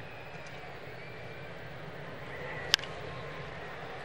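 Steady murmur of a ballpark crowd, with one sharp crack of a wooden bat hitting the pitch about three-quarters of the way through.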